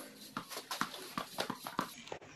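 Quick, irregular light taps and knocks, several a second, from a tennis rally played with a soft, low-bounce exercise ball on a concrete street: racket hits, ball bounces and footsteps.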